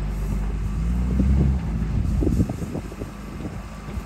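A wheel loader's diesel engine running steadily as it holds a raised bucket of crushed stone, dropping back about one and a half seconds in. Shortly after, a brief clatter as the stone pours into the steel body of the tipper.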